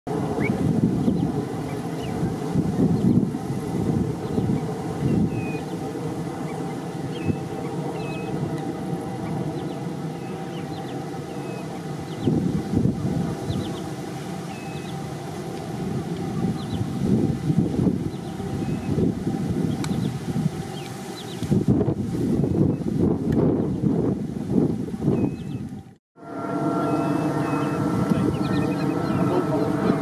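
Gusty wind noise on the microphone, with faint short bird calls now and then. Near the end a brief dropout gives way to a steadier hum with a few held tones.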